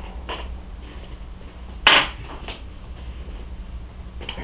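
Fly-tying thread and tools handled at the vise: a sharp click about two seconds in and a fainter one half a second later, over a low steady hum.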